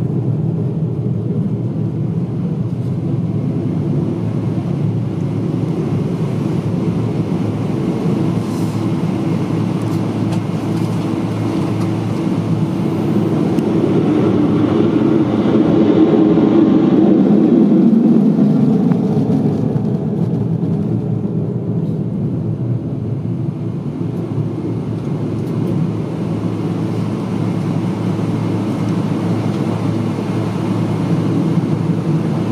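Twin-engine F-15J fighter taking off on full afterburner, its two F100 turbofans making a loud, continuous jet roar. The roar swells about halfway through and drops in pitch as the aircraft passes and climbs away, then eases.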